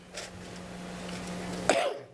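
A single short cough near the end, over a steady low hum and the room's background noise.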